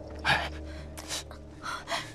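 A person gasping: three or four short, sharp breaths in quick succession.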